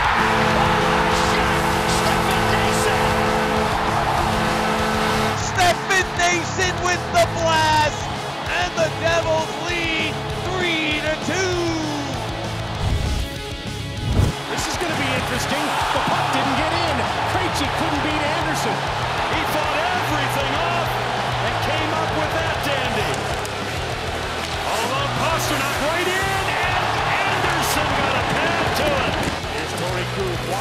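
Hockey arena after a goal: a steady goal horn blares over a cheering crowd, followed by arena celebration music. After a short break near the middle, a steady arena crowd noise carries on.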